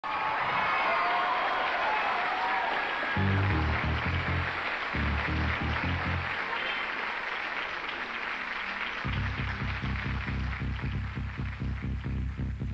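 Crowd applauding and cheering as the intro of a live electronic pop song begins. Deep bass notes come in about three seconds in, and a steady pulsing bass beat starts near the end.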